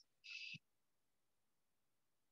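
Near silence, apart from one brief faint high squeak about a quarter second in: a marker squeaking on a whiteboard.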